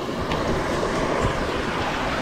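Steady hiss of rain falling.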